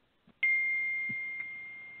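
A single high ding: one pure tone that starts sharply, fades slowly and is cut off after about a second and a half.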